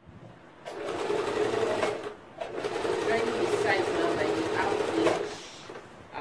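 Electric home sewing machine stitching fabric in two runs: one from just under a second in to about two seconds, then after a short pause a longer run that stops about a second before the end.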